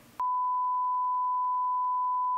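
Censor bleep: one steady pure beep tone masking a spoken word in the interview, starting sharply just after the start.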